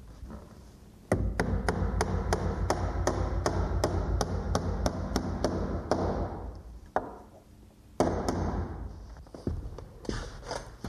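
A hammer tapping shim shingles in behind a door's hinge jamb, with quick, even light blows about three a second for some five seconds. A single louder thump comes about eight seconds in.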